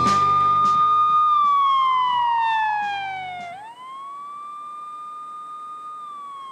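Television programme title music ending in a siren-like electronic tone: it holds, slides steadily down for about two seconds, then rises back up and holds again. The music under it stops about halfway through, leaving the tone alone and quieter.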